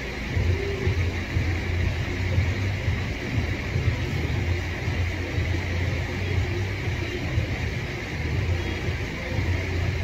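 Steady low rumble with a faint hiss above it, with no distinct events.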